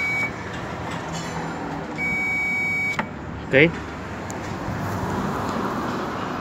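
Power Probe 3 circuit tester beeping. A steady high tone cuts off just after the start, then sounds again for about a second from two seconds in, signalling voltage picked up on the wire under test.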